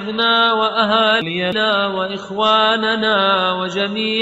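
A single voice chanting an Arabic supplication in a slow, melodic recitation, holding long, steady notes.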